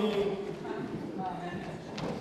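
High-heeled footsteps on a wooden stage floor, mixed with voices talking.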